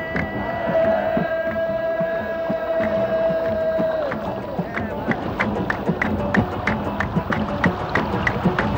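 A group of men singing: one voice holds a single long note for about four seconds, then rhythmic hand-clapping sets in at two to three claps a second over the voices.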